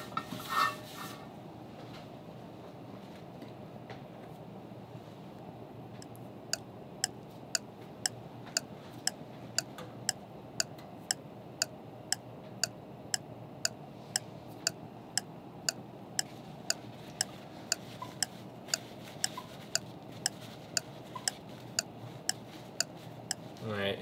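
Steady low rush from the gas burner heating a carbon steel skillet, after a brief last rub of an oily paper towel across the pan at the start. From about six seconds in, a light, even ticking comes about twice a second until near the end.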